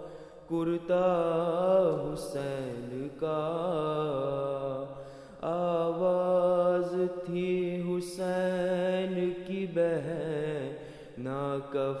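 A man's solo voice chanting an Urdu noha, a Shia mourning lament, without accompaniment. He sings long, wavering held notes with brief pauses between phrases.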